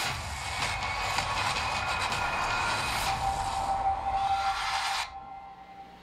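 Documentary sound design under space footage: a loud rushing noise with a few held tones over it, with music, cutting off about five seconds in and leaving a faint held tone.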